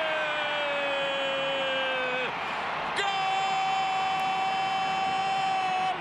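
A television commentator's drawn-out goal call, "¡Gooool!", held in two long shouted notes: the first sinks slightly in pitch, and after a short breath the second is higher and steady. Stadium crowd cheering runs beneath.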